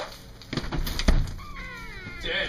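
A few sharp knocks ending in a louder thump, then, from about three-quarters of a second in, a high wail that falls slowly in pitch.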